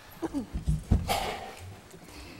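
Chairs creaking and knocking as people sit back down: a couple of short squeaks near the start, then low thumps and a scraping creak about a second in.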